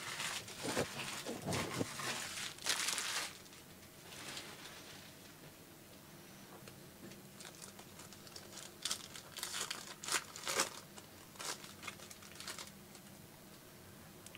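Foil wrapper of a Panini Phoenix football card pack crinkling and tearing as it is opened by hand. The sound comes in scattered bursts, loudest about three seconds in, with a quieter stretch in the middle.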